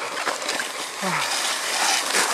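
Sled sliding over snow: a steady hissing scrape of the runners, with a short falling grunt from the rider about a second in.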